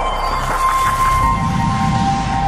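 Logo-reveal intro music: a held synthesizer tone that steps down in pitch over a low drone, with a whooshing sweep in the first second.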